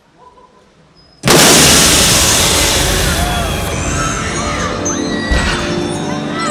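A stage pyrotechnic explosion goes off suddenly about a second in, very loud, and its noise dies away slowly under music and crowd noise.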